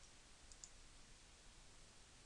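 Two quick computer mouse clicks about half a second in, faint over a steady low hiss.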